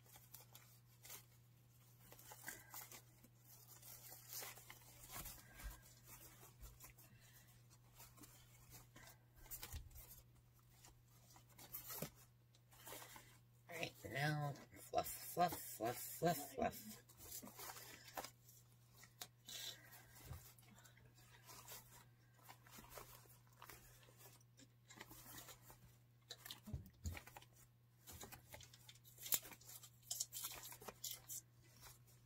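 Faint, irregular rustling and crinkling of wired fabric ribbon as hands pull out and fluff the loops of a large bow. A voice is heard briefly about halfway through.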